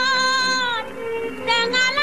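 A woman singing a Malay song in a high voice, over instrumental accompaniment. She holds a long note with vibrato that ends about a second in, then begins the next phrase near the end.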